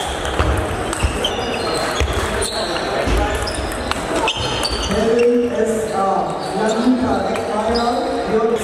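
Table tennis balls clicking off bats and tables in a reverberant sports hall with several tables in play, over a hubbub of voices. From about five seconds in, a voice stands out clearly above the clicks.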